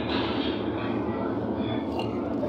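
Steady low rumbling noise with a hum underneath, even in level throughout, with faint voices over it.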